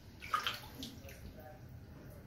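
Shallow bathwater splashing briefly as a child shifts in the tub, about half a second in, then faint sloshing.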